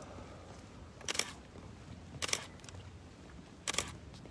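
Camera shutters clicking: three separate clicks about a second apart over a quiet background.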